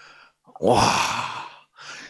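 An elderly man's drawn-out, breathy exclamation "wa—" (Korean "와", an expression of wonder), close to a sigh, lasting about a second.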